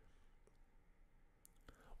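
Near silence: room tone with a few faint clicks in the second half.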